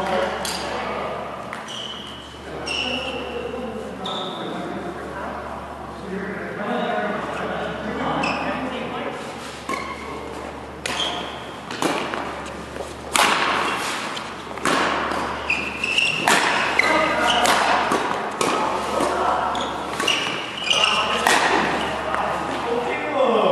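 Badminton doubles rally in a large hall: the sharp cracks of rackets striking the shuttlecock, coming faster in the second half, with short high squeaks of shoes on the court mat and voices echoing in the hall.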